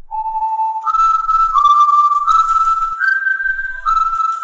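A whistled tune: one clear note after another, each held for about three-quarters of a second, starting low, then stepping up and down in a short melody, with the last note still held at the end.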